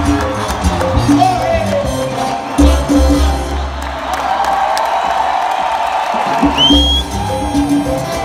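Live salsa orchestra playing. The bass drops out for a couple of seconds around the middle and then comes back, and a short rising whistle sounds near the end.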